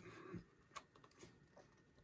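Near silence with a few faint clicks from a plastic Blu-ray case being opened.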